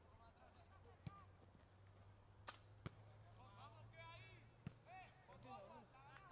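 Faint, distant shouts of rugby players calling across the pitch, thickening in the second half, over a low steady hum, with four sharp clicks scattered through.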